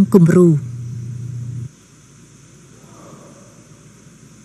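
A voice briefly, then a low steady hum that cuts off suddenly under two seconds in, leaving only faint background noise.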